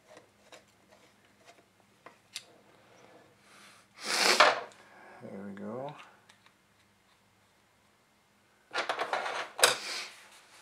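Compressed air blown through the oil passages of a TH400 transmission pump body in two loud hissing blasts, about four seconds in and again for the last second or so; the second blast flutters. It is an air check of the passage that now holds a newly fitted drilled plug. A few light metal clicks from the hex key come before.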